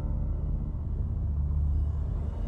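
A steady, low rumbling drone with faint held tones above it.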